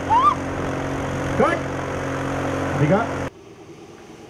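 A steady, low engine-like hum carries through, with several short high cries in a woman's voice over it, the loudest just at the start. The hum cuts off suddenly a little over three seconds in.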